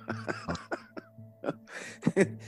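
A person's short laugh trailing off into coughing, with a breath in near the end.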